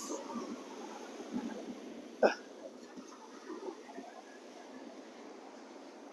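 Steady wash of breaking surf and breeze on an open beach, with a man's short 'huh' exclamation about two seconds in.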